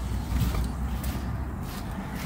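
Footsteps on block paving with phone handling noise while walking, over a steady low rumble.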